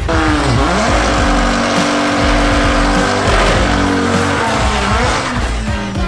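Chevrolet Sonic hatchback launching hard down a drag strip, its engine held at high revs while the tyres squeal, with music playing underneath.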